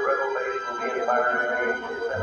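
Live symphony orchestra playing a film score in a concert hall, sustained chords that swell fuller and louder right at the start.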